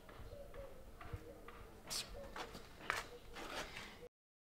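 Faint footsteps, four or so steps about half a second apart in the second half, over a low steady hum.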